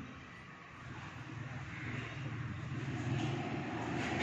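A low, steady mechanical hum that grows louder over the first three seconds.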